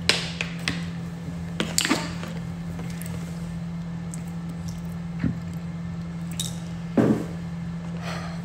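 Scattered crinkles, clicks and knocks from a plastic drink bottle and the phone being handled, the loudest right at the start and about seven seconds in, over a steady low hum.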